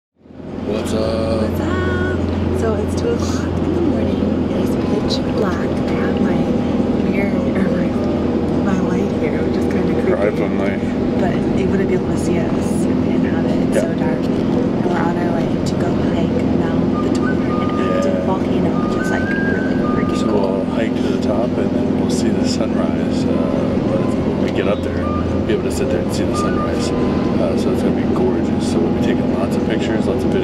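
Steady low drone of a vehicle running, with indistinct voices and some music over it.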